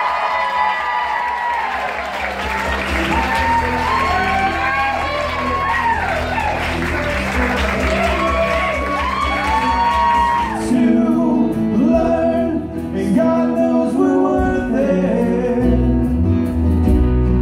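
Guests cheering, whooping and clapping over loud music with a steady bass line. About ten seconds in the sound changes abruptly to a live band playing, with bass guitar and guitar.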